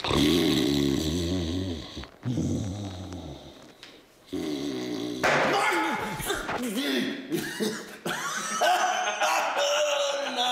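A man snoring loudly in deep, drawn-out stage snores, three in a row. About five seconds in he wakes into voiced exclamations and speech.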